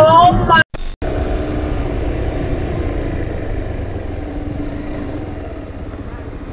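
A small motorcycle's engine running steadily at low revs, heard from a camera on the bike, its level slowly easing off. At the very start there is a brief rising tone, cut off about two-thirds of a second in.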